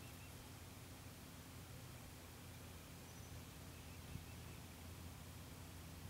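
Near silence: faint steady background noise with a low hum.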